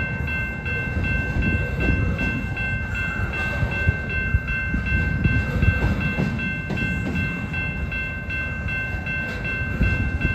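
Double-stack intermodal freight cars rolling past at speed: a continuous rumble of wheels on rail, with quick clacks over the rail joints. A steady high ringing that pulses about three times a second runs underneath.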